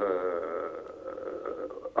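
A man's voice on a phone line holding one long, drawn-out hesitation syllable. It fades away toward the end.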